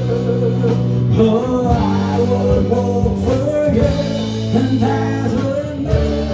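Live rock band playing with a steady beat: electric lead guitar, strummed acoustic guitar, bass guitar, keyboard and drums.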